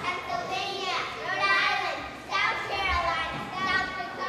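Young children talking and chattering, several high voices overlapping.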